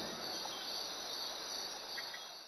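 Faint, steady chirring of crickets.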